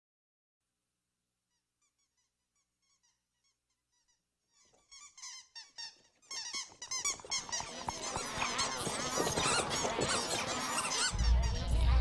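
Squeaking: a few faint, high chirps grow into a dense chorus of many overlapping squeaks, with a low rumble joining near the end.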